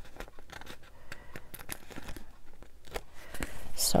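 Paper handling: the pages of a small spiral-bound pad of printed word strips being flipped and handled, a run of small crisp clicks and rustles.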